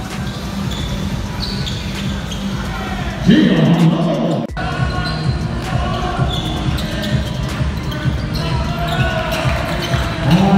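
Background hip-hop instrumental with a steady beat, and a loud voice-like burst about three seconds in that cuts off sharply a second later.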